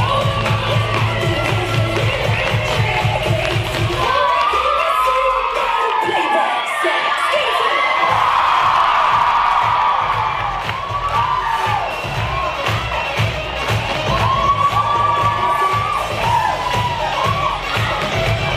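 An audience cheering and shouting loudly over dance music with a steady beat. The beat drops out for several seconds from about four seconds in while the cheering swells, then returns.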